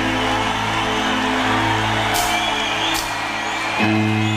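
Live hard rock band playing sustained held chords, with a couple of brief crashes and a new chord coming in near the end.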